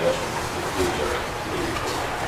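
A man's low voice speaking, soft and muffled in a meeting room.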